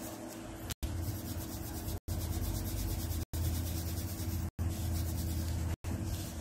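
A steady low hum with a faint hiss above it, broken by short total dropouts about every second and a quarter.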